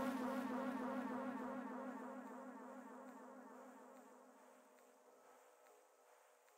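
Electronic buzzing drone on one steady low pitch, the tail of the channel's ident sting, fading away over about five seconds.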